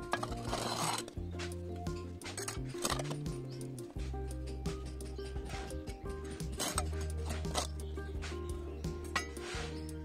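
Background music with steady low notes, over which a small metal trowel scrapes and scoops potting soil and clinks against terracotta pots in short, scattered strokes.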